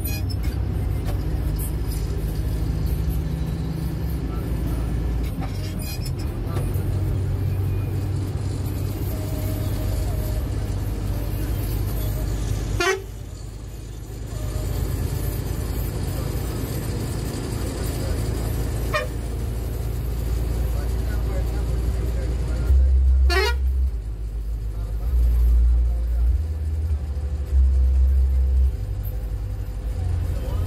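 Private route bus's engine running as the bus drives along the road, heard from the driver's cabin, with the horn tooted along the way. The engine note drops off briefly about halfway through and pulls harder near the end.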